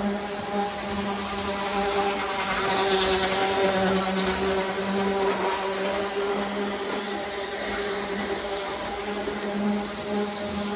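A standard-gauge toy Burlington Zephyr train running on a tinplate layout: its electric motor buzzes steadily while the wheels rumble along the metal track. It grows a little louder for a few seconds about a third of the way in.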